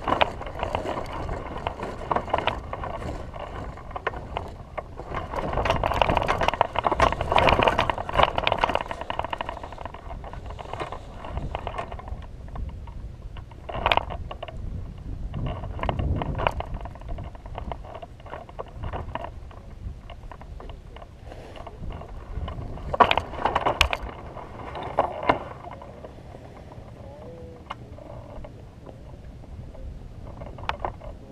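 Air rushing over the microphone of a camera mounted on a hang glider as it is launched and flown, with sharp knocks and rattles from the glider's frame, the loudest a little past the middle.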